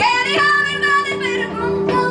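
A woman singing live into a microphone: a phrase of long held notes with vibrato that begins at the start, over instrumental accompaniment sustaining steady low notes.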